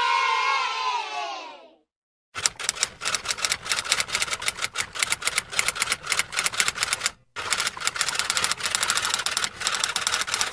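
Rapid typing on a typewriter: a dense, fast run of key strikes that starts a little over two seconds in, breaks off briefly about seven seconds in, then carries on. Before the typing, a group of voices cheering 'yay' fades out during the first two seconds.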